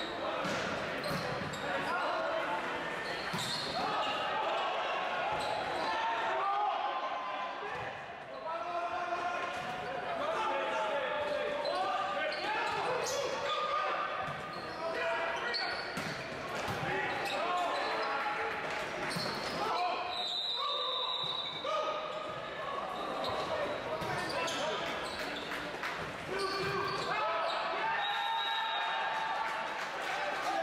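Indoor volleyball rally in a large gym: a steady hubbub of spectators' and players' voices with players calling out, broken by sharp smacks of the ball being hit. There is a short, steady high tone about two-thirds through.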